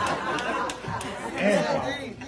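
Indistinct chatter: several people talking at once, not clearly, with a few light clicks.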